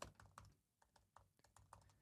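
Faint typing on a laptop keyboard: a run of soft, irregular keystroke clicks.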